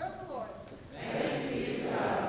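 A single voice speaks briefly, then many voices of a congregation speak together for about a second, in a large reverberant church.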